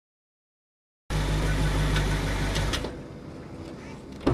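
Silence for about a second, then a car engine idling with a steady low hum, which stops after about a second and a half with a couple of clicks, leaving quiet background noise.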